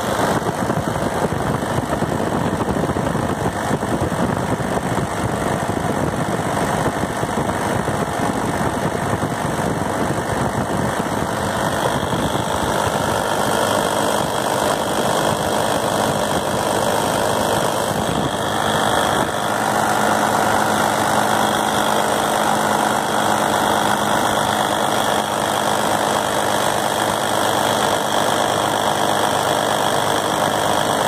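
Oliver 88 tractor's six-cylinder diesel engine idling steadily, heard close up beside its injection pump. It grows a little louder and brighter about two-thirds of the way in.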